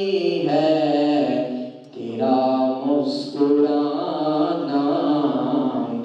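A man chanting Islamic devotional verse unaccompanied into a microphone, drawing out long wavering notes, with a short break for breath about two seconds in.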